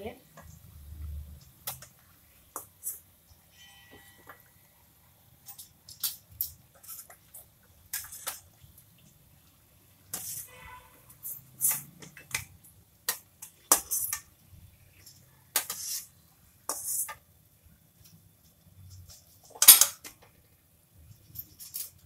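Steel spatula and wire skimmer scraping and clinking against a stainless-steel kadhai as pieces of mathri are turned and lifted out of the frying oil. The knocks come irregularly, with a sharp strike of metal on metal about twenty seconds in.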